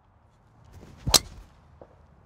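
Golf driver swung at a teed ball: a short swish of the downswing building up, then one sharp, loud crack as the clubhead strikes the ball about a second in.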